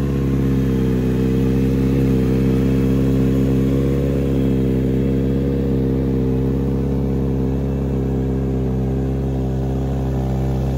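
Kawasaki Z900RS's 948 cc inline-four engine idling steadily.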